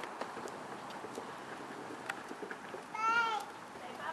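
A ring-tailed lemur gives one short, slightly arched call about three seconds in.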